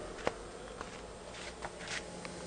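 Microwave oven transformer in a homemade modified sine wave inverter buzzing steadily under load, with the inverter's small 12 V cooling fan running. A brief click about a quarter second in.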